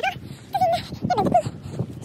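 A high-pitched voice giving a few short, wavering calls without clear words.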